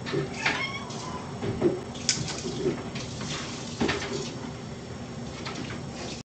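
A cat meowing once, a short call about half a second in, followed by a few soft knocks and rustles.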